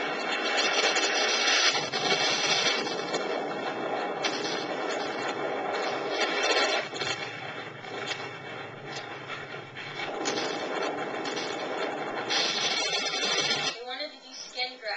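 Loud, dense music that runs on without a break and stops abruptly at the end.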